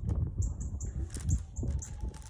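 A small bird chirping: a string of short, high-pitched chirps, a few a second, over a low background rumble.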